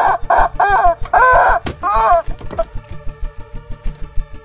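Chicken clucking: five or six short, high calls in quick succession, the longest about a second in, stopping after about two and a half seconds.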